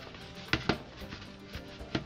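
Soft background music, with a few sharp taps from hands pressing atta dough against a plastic bowl: two about half a second in and one near the end.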